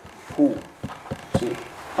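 A man preaching says one short word, then pauses; three faint taps follow about a second in.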